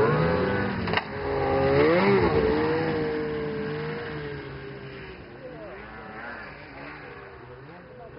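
Snowmobile engine revving as it passes, its pitch rising and falling, then holding a steadier note and fading as the machine rides away. A sharp click about a second in.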